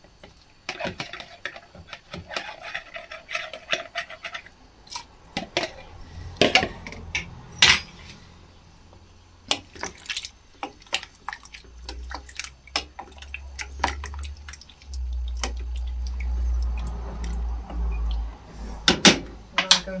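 Stock poured from a plastic jug into a stainless steel stew pot of vegetables, followed by repeated clinks and knocks against the pot as the vegetables are stirred. A low rumble comes in during the second half.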